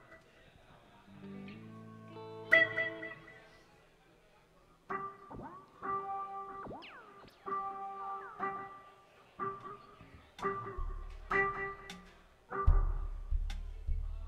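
Electric guitar being tuned between songs: single plucked notes and harmonics repeated about once a second, the pitch sliding as a string is brought up to pitch. Low bass notes come in near the end.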